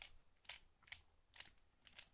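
Dayan ZhanChi 3x3 puzzle cube being turned by hand: about five faint, sharp clicks roughly half a second apart, one per face turn, as a solving algorithm is performed.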